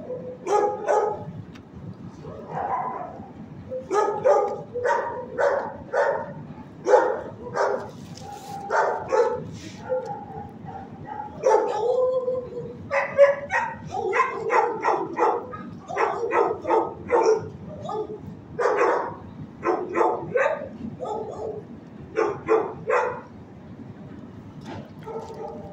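Dogs in a shelter kennel barking over and over, short barks coming in quick runs with brief pauses between.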